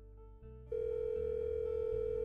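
Soft background music, then, under a second in, a loud steady telephone tone that holds on: the beep of a voicemail message about to play.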